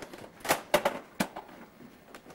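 Hard plastic clicks and knocks from a toy boat's pieces being handled, with four sharp ones between about half a second and a second in and lighter ticks around them.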